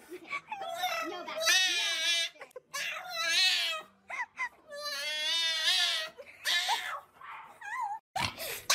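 A French bulldog screaming during a nail trim: three long, wavering, almost human-sounding wails and a few shorter cries near the end. It is protesting being held and clipped rather than in pain; it is just super vocal.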